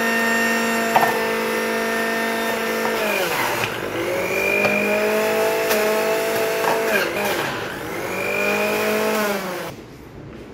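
Preethi Zodiac mixer grinder running with its juicer jar, a steady motor whine that drops in pitch and picks back up a couple of times as it slows under the load of fruit and vegetables being juiced. The motor cuts off near the end.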